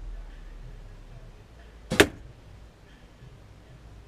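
A shot from a Win&Win recurve bow: one sharp snap about halfway through as the string is released and the arrow flies.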